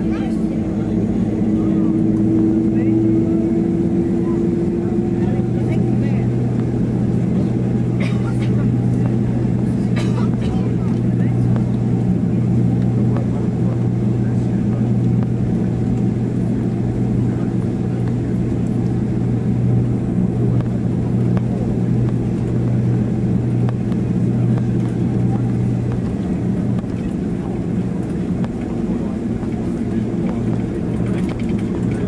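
Steady cabin noise of a Boeing 767-300ER taxiing: a constant low engine hum, with a higher tone that fades out about five seconds in and the low drone easing near the end.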